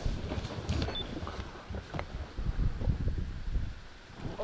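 Wind buffeting the microphone as an uneven low rumble, with a few faint clicks.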